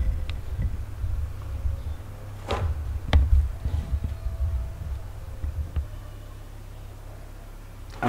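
Handling noise from a handheld camera being carried along: a low rumble on the microphone with a few scattered knocks and brushes, the loudest about two and a half to three seconds in, settling quieter near the end.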